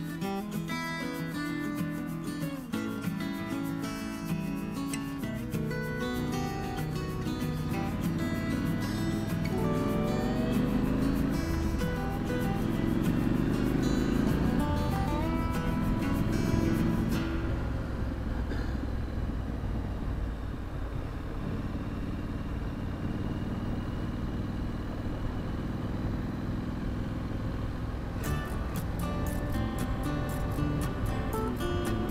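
Music plays over a 2017 Triumph Street Scrambler's 900 cc parallel-twin engine under way, the engine note rising in pitch a few times in the middle as the bike accelerates. For about ten seconds in the second half the music falls away, leaving the engine's steady low running sound, and it returns near the end.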